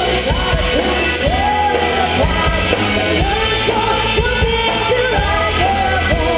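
Loud amplified band music with singing: a wavering melody over a steady heavy bass line, playing without a break.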